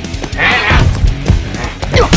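Action-drama battle music under a fight scene, with a loud cry rising over it about half a second in.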